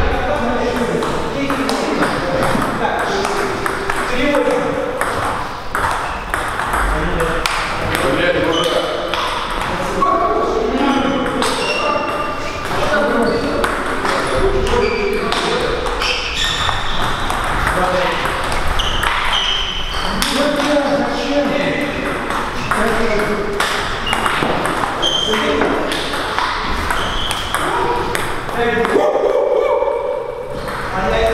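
Table tennis ball being struck back and forth in rallies: quick sharp clicks of the ball off the bats and bounces on the table, many per second at times, over people talking in the hall.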